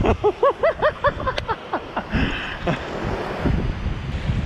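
A man's excited laughter: a quick run of about seven high 'ha' bursts in the first second, over wind buffeting the microphone and surf washing on the beach.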